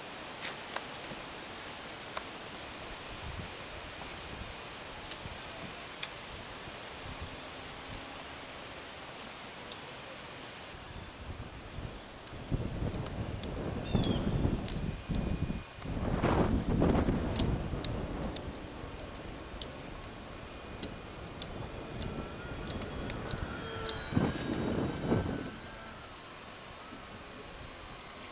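Wind buffeting the microphone in gusts, loudest in two stretches: one about halfway through, the other near the end. Under it is the thin high whine of a ParkZone Cub's electric motor and propeller, flying overhead.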